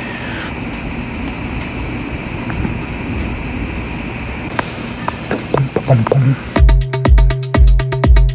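Electronic techno beat from the MIDI-clock-synced Elektron synth and drum setup. It starts suddenly about six and a half seconds in as a steady four-on-the-floor kick, about two beats a second, over a held bass tone. Before it there is only a steady hiss with a few faint clicks.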